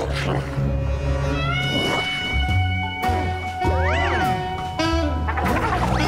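Cartoon score with sustained low bass notes and comic sound effects, including a quick rise and fall in pitch about four seconds in.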